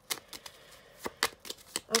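A deck of playing cards being handled and shuffled in the hand, giving a run of sharp card clicks and snaps that grow denser and louder in the second half.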